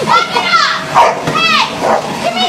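A canister vacuum cleaner running with a steady hum, under loud high-pitched cries that rise and fall, one near the start and another about a second and a half in.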